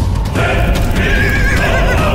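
A horse whinnying, a long wavering neigh in the second half, over a loud music score.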